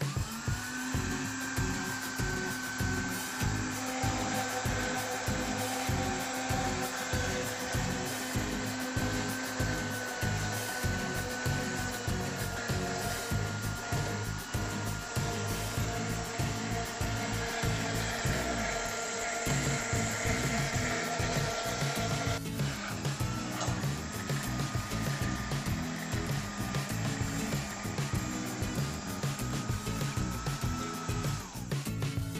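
Electric countertop blender motor running steadily as it mixes a thick pie batter while flour is added, its whine sinking slightly in pitch as the batter thickens. It cuts out briefly about two-thirds of the way through and starts again. Background music with a beat plays underneath.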